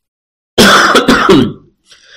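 A person's loud cough, about a second long, starting about half a second in.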